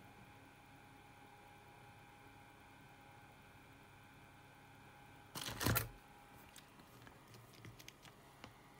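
Faint steady hum at a workbench. About five seconds in there is a brief loud rustling clatter of tools being handled as the soldering iron, desoldering braid and squeeze bottle are picked up. It is followed by a few light clicks and taps.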